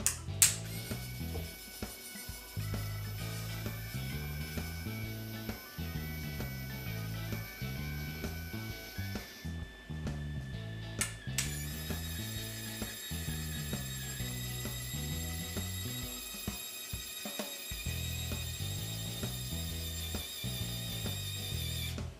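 A small DC motor and gearbox in a 6-inch stroke micro linear actuator whine steadily as the actuator extends under a 4.5-pound load for about eight seconds. A click follows, then it whines for about ten seconds more as it retracts. Background music with a steady bass line plays throughout.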